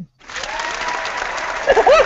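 Canned crowd applause and cheering from a video-call sound effect, starting suddenly just after the start, with a few whoops near the end.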